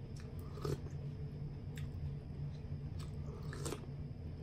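A person eating close to the microphone: chewing with mouth noises and a few short sharp clicks, the loudest under a second in. A steady low hum runs underneath.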